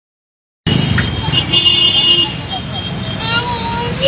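Street traffic with a vehicle horn sounding briefly near the middle and people's voices over it; the sound cuts in suddenly about half a second in.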